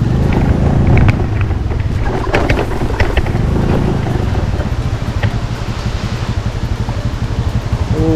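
Motorcycle engine running, a steady low rumble with a few faint clicks over it.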